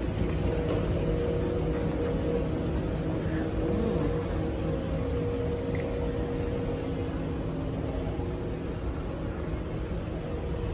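A Schindler 9500AE inclined moving walkway running on its way down, giving a steady mechanical rumble and hum.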